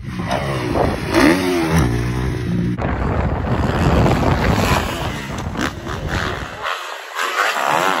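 Motocross bike engine revving up and down as the rider goes through corners and jumps, the pitch rising and falling repeatedly.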